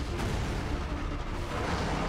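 Anime battle soundtrack: a low, rumbling blast of impact and destruction effects with background music.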